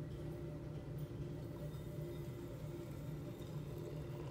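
Quiet room tone: a steady low hum with no distinct event.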